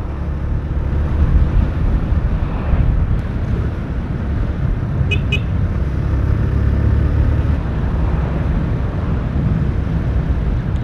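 Motorcycle engine running steadily while riding along a street, with heavy wind rumble on the bike-mounted camera's microphone.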